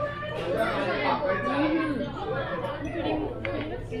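Indistinct conversation: several people chatting, over a steady low hum.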